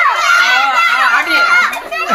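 Several children talking and calling out at once, their high voices overlapping.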